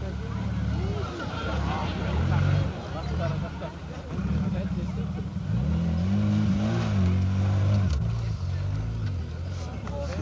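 Off-road competition buggy's engine revving hard under load as it drives up a muddy slope, its pitch rising and falling, loudest in the middle of the stretch. Spectators' voices chatter over it.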